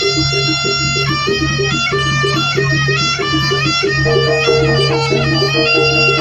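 Live East Javanese jaranan music: a reedy, shawm-like slompret plays a melody that steps from note to note over a steady low tone and a quick, repeating gamelan percussion pattern.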